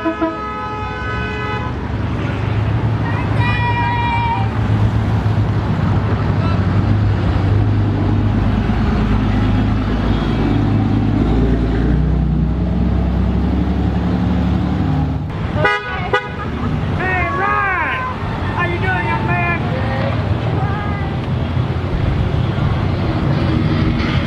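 A car horn honking briefly at the start, then the steady low rumble of a large pickup truck's engine as it drives slowly past close by. Near the end come several high, swooping calls.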